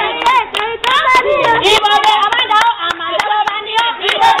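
Hands clapping in a steady rhythm, about three claps a second, over a group of voices singing and calling out together.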